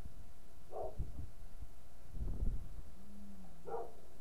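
A dog barking in the distance, two short barks about three seconds apart, over low rumbling noise.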